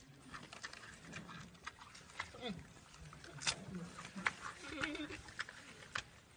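Giant panda chewing bamboo: an irregular run of crisp crunches and cracks as the stalks break between its teeth.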